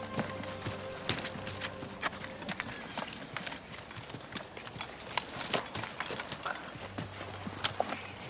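Movement of a group of soldiers: footsteps and rattling equipment, with many scattered light knocks and clinks, among them glass bottles knocking together.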